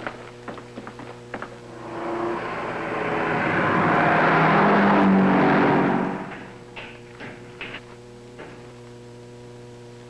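A car drives past: its engine and road noise swell from about two seconds in to a peak around five seconds, then fade away by six and a half. Light clicks and knocks come before and after, over a steady hum.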